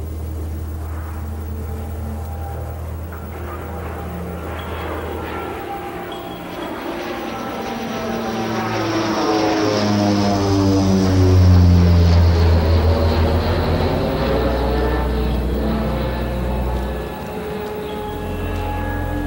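An airplane flying past overhead. Its sound builds to a peak a little after the middle and then eases off, dropping in pitch as it passes.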